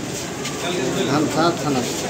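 A man speaking in Hindi in a halting, low voice.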